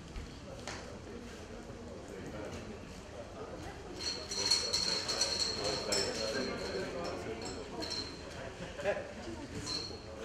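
Draw balls clicking and rattling in a small glass bowl as a hand rummages for one, over a low murmur of voices in the room. A thin high steady whine sounds from about four to eight seconds in.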